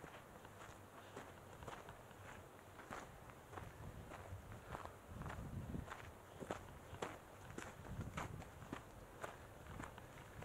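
Footsteps of a hiker crunching on a dry dirt and gravel trail, a steady walking pace of about two steps a second. A faint low rumble swells in the middle and again near the end.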